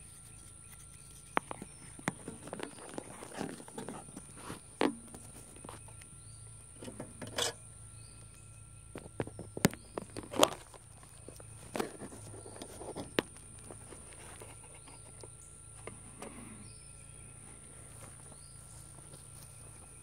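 Footsteps in grass with scattered handling clicks and rustles, including a few sharp clicks about ten seconds in, then quieter for the last few seconds. A steady high-pitched insect drone runs underneath.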